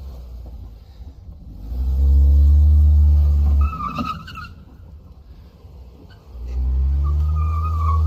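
A Toyota C-HR's engine revs in two loud surges of about two seconds each as the car is driven in sharp turns. A thin high tire squeal comes after the first surge and again during the second.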